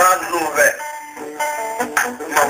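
A man singing a religious song, his voice wavering and sliding between notes, with a couple of long held notes in the middle.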